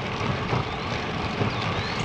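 Steady rush of wind on the microphone, with tyre and road noise from a road bike rolling along concrete pavement.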